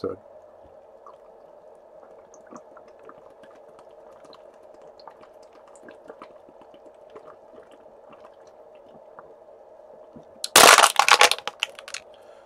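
Faint swallowing and small liquid clicks as a man drinks water from a plastic bottle, over a steady low hum. About ten and a half seconds in comes a loud, brief crackle lasting about a second.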